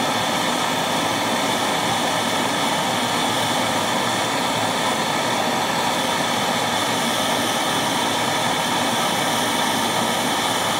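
Handheld gas torch burning with a steady hiss as its blue flame heats an aluminium tube, bringing the tube to temperature so it can be press-formed into an intake runner.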